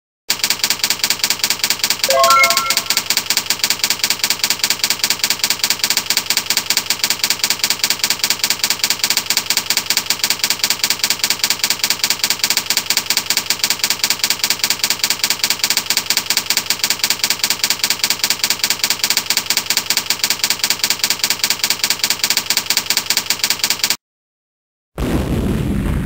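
Typewriter sound effect of a slideshow text animation: a rapid, even run of key clicks that goes on steadily, with a brief bell-like ding about two seconds in.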